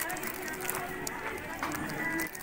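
Indistinct background chatter of people in a busy shop, with crinkling of plastic packaging being handled.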